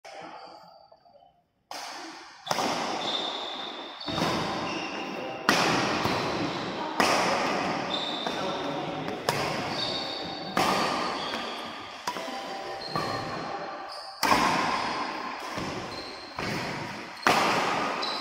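Badminton rally: a racket strikes the shuttlecock sharply about every second to second and a half, a dozen or so hits. Each hit trails off in the long echo of a large hall.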